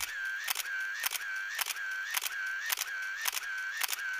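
Camera shutter sounds repeating in a steady rhythm, about two a second, each a sharp click with a short whirring wind, like a motor-driven SLR firing a burst.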